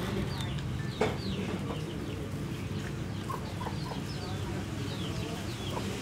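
Chickens clucking and peeping, with short, falling high chirps repeating throughout and a few lower clucks in the middle. A single knock about a second in.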